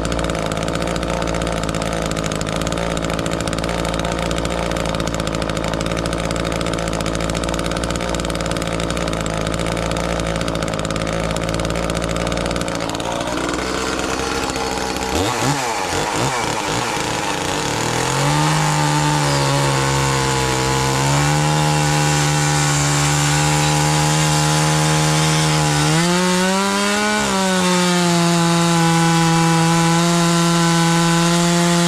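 Gas chainsaw running flat out and cutting into a hickory handle blank. Partway through, the engine note breaks and wavers as the saw comes out of the wood. It then settles into a steady cut again, with a short rise in pitch near the end.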